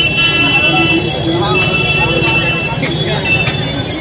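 Crowd of people talking at once in a busy street, with traffic rumble underneath and several steady high-pitched tones held over the chatter, some lasting about a second.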